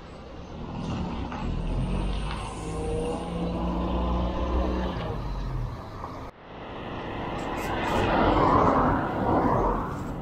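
A motor vehicle's engine runs nearby with a low, steady hum for the first six seconds. After an abrupt cut, a rushing noise of traffic and road swells up.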